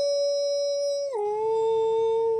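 A woman singing unaccompanied, holding one long vowel at the end of a phrase, then stepping down to a lower note about a second in and holding it.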